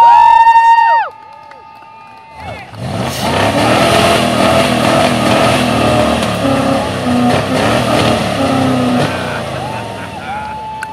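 Rat rod engine revved hard for a flamethrower display, its exhaust rushing noisily as it shoots flames. This starts about two and a half seconds in and runs on. Before it comes a loud, held high tone of about a second that cuts off suddenly.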